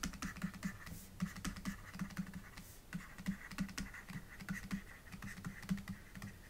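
Pen stylus on a graphics tablet writing out words by hand: a quiet, rapid, irregular run of small clicks and taps.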